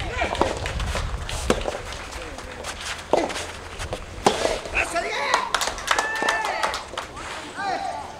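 Soft tennis rally: sharp knocks of the soft rubber ball off racket strings and the court at irregular intervals, the loudest about four seconds in. Voices call out in the second half.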